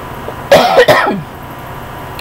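A woman coughing into her fist, two quick coughs close together about half a second in: the lingering cough of a summer cold.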